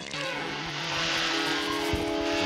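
Cartoon sound effect of a super-termite whirring like a small motor as it chews through wooden furniture, a steady buzzing whir that swells just after the start. Orchestral music plays under it, with a held brass note entering about halfway through.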